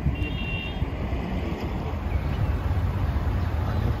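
Outdoor street ambience: a steady low rumble of traffic and wind on the microphone, with a short high tone about a quarter second in.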